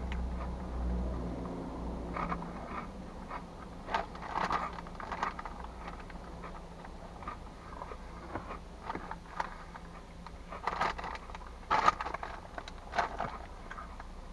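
Crunchy Cheetos being chewed, with the snack bag crinkling as a hand reaches into it: scattered short crunches and rustles. A low steady hum underneath fades out after a couple of seconds.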